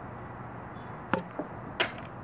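Three sharp knocks on a hard clear plastic container as it is handled and moved. The first comes about a second in, the second is faint, and the loudest comes near the end.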